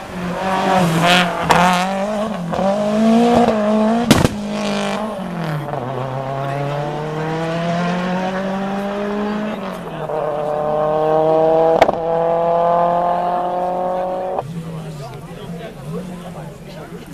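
Rally car engine at full throttle as the car passes and pulls away, its pitch climbing through the gears with a drop at each shift. There are two sharp cracks, about four seconds in and near twelve seconds, and the engine note falls away suddenly near the end.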